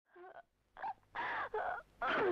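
A woman crying out in four short, broken wailing sobs, each sliding down in pitch, growing louder one after another.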